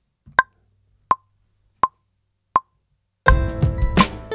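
Logic Pro's metronome counting in one bar at 83 BPM: four clicks about 0.7 s apart, the first higher-pitched as the downbeat accent. About three seconds in, the Crate Digger drum kit starts playing over pitched musical parts, played live from the Launchpad X pads as recording starts.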